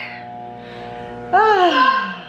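A low steady hum made of several held tones, then a short 'Ah!' exclamation that slides down in pitch about a second and a half in.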